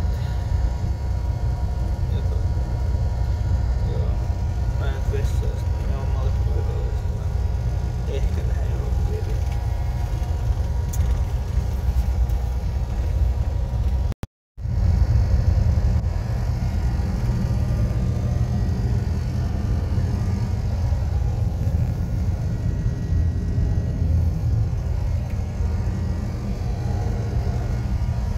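Steady low rumble of a moving vehicle heard from inside its cabin. It breaks off completely for a moment about halfway through, then carries on.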